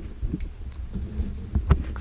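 Handling noise from the camera being picked up and swung round: an uneven low rumble with dull thumps, and one sharper knock near the end.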